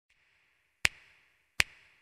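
Two sharp clicks, about three-quarters of a second apart, each fading in a short ringing tail: a sound effect over an animated production-company logo.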